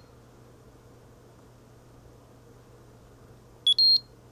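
Peak Atlas DCA Pro (DCA75) transistor analyser giving a short two-note electronic beep near the end, a lower note stepping up to a higher one, as its test finishes and the result comes up. Before the beep there is only a faint steady hum.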